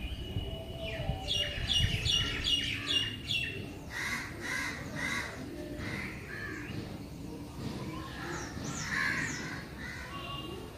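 Birds chirping and calling: a quick run of repeated notes, about three a second, in the first few seconds, then scattered calls, with a few high sweeping chirps near the end.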